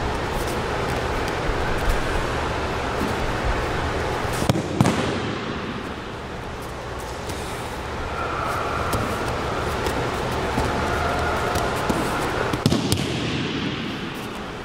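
Thuds of bodies and feet hitting a padded mat as aikido partners throw and take falls: a loud pair about a third of the way in and another near the end, over a steady hum of room noise.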